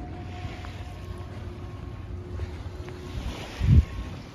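Wind buffeting the microphone with a steady low rumble, and one brief, much louder low thump near the end.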